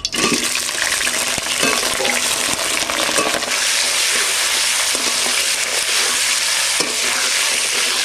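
Cauliflower florets tipped into hot mustard oil in a kadai, sizzling at once as they hit, then frying with a steady loud hiss while a metal spatula stirs them, with scattered scrapes of the spatula on the pan.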